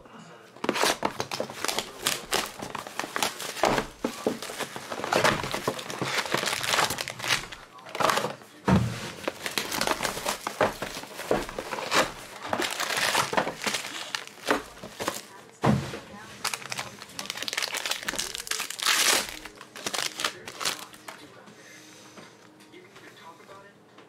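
Foil trading-card packs and box packaging crinkling and tearing as they are handled and ripped open, with dense, irregular crackles and rustles that thin out over the last few seconds.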